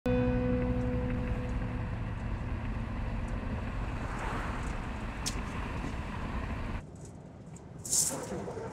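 An SUV driving along a road, with steady engine and tyre noise. A held tone fades out over the first two seconds. Near the end the sound drops abruptly to a quieter cabin hum, and a brief swish follows.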